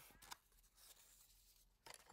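Near silence: quiet room tone with a few faint rustles of card being handled early on.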